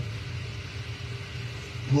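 A pause in speech filled by a steady low hum, like a room's sound system left open, with a man's voice starting again right at the end.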